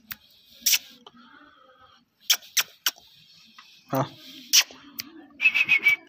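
Scattered sharp clicks, then a quick run of high chirpy clicks near the end, with a person's short 'ah' about four seconds in.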